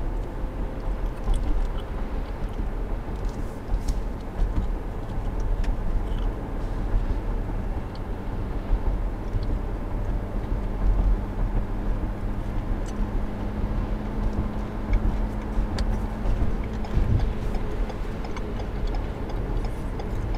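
Steady road and engine noise inside a moving car at traffic speed: a low rumble under a faint steady hum, with a few faint clicks.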